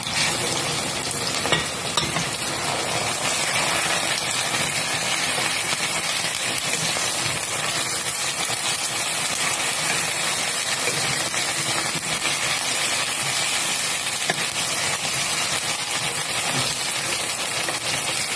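Raw chicken pieces sizzling and frying in a nonstick pan with diced potatoes and onions, stirred with a wooden spatula. The sizzle is a steady hiss, with a brief knock about one and a half seconds in.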